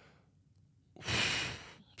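A man's audible sigh: one breathy exhale of just under a second, starting about a second in and fading out, after a second of near silence.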